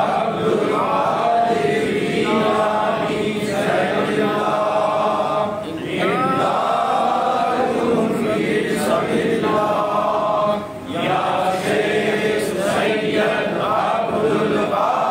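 Sufi zikr chanting: voices chanting a devotional phrase over and over in long sustained phrases, with short breaks about six and eleven seconds in.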